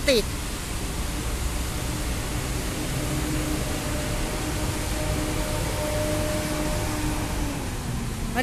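Steady outdoor street noise heard from an elevated walkway above the road: an even hiss with a faint low hum from about three to seven seconds in.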